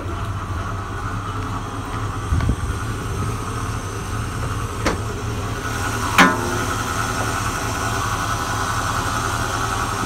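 1968 Ford Mustang's 351 V8 idling steadily just after starting, a low even rumble. A few brief clicks sound over it, the sharpest a little past six seconds in.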